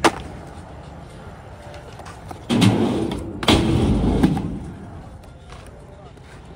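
Skateboard on a concrete skatepark: a sharp crack right at the start, then two louder, longer clatters of board and wheels about two and a half and three and a half seconds in, the second deeper and lasting about a second.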